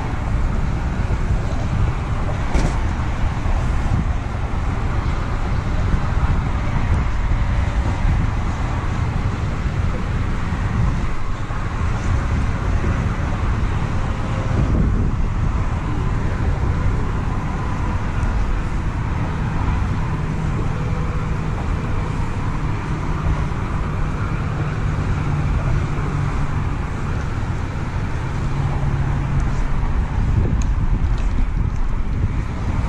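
Steady, rumbling wind noise buffeting the microphone, with a faint low hum coming in about two-thirds of the way through.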